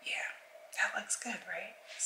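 Only speech: a woman talking softly, almost in a whisper.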